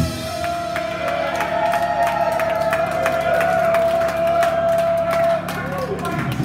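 A metal song ending on a live stage: the full band stops, and one electric guitar tone is left ringing over amplifier hum for about five seconds before it cuts off. The crowd cheers and whoops through it.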